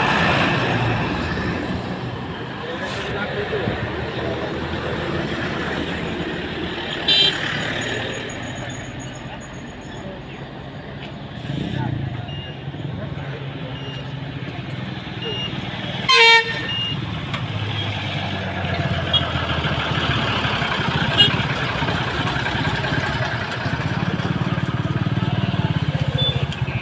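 Crowd voices and road traffic at a roadside, with two short vehicle-horn toots, one about seven seconds in and a louder one about sixteen seconds in.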